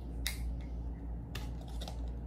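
A few light clicks and handling noises as a permanent marker is uncapped and a foam cup is picked up, over a low steady hum.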